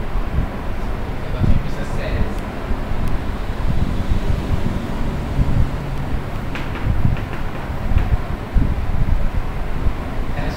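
A man's voice speaking over a steady low rumble. A few short chalk strokes on a blackboard come between about six and eight seconds in.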